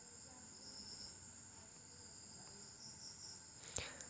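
Faint, steady high-pitched chirring of crickets in the background, with two short clicks near the end.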